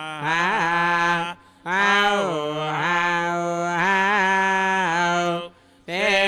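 Male voice chanting Vedic mantras on a mostly steady, held pitch with small rises and turns, pausing briefly twice.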